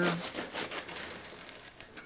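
A knife sawing through the crisp, blistered crust of a whole wheat ciabatta loaf, giving a rapid run of dry crackles. The crackling is loudest in the first second and fades as the blade works down into the soft crumb.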